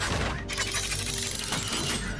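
Film sound effects of a semi-truck transforming into a robot: a dense clatter of many small metallic clicks and shifting mechanical parts, with a low rumble, over music.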